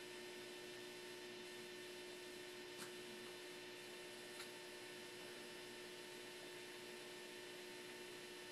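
Faint steady electrical hum with light hiss, and two small ticks about three seconds in and again a second and a half later.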